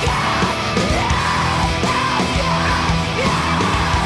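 Post-hardcore rock band playing at full volume: distorted guitars, bass and drums under yelled vocals whose pitch rises and falls in repeated arches.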